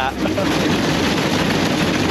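Steady crackling, rushing noise of a pontoon boat under way through icy water, thin ice and water working along its aluminium pontoons.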